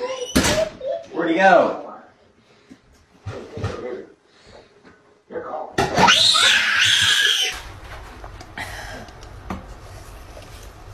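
Young children's voices, rising to loud, high-pitched excited squealing about six seconds in that lasts a second and a half. A low steady hum follows to the end.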